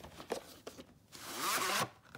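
VHS cassette sliding out of its cardboard sleeve: a few light taps, then a scraping swish of plastic against cardboard about a second in that builds for most of a second and cuts off suddenly.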